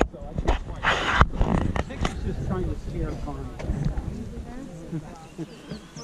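Indistinct voices of a group of people talking as they walk, with a few short knocks and rustles in the first second or so.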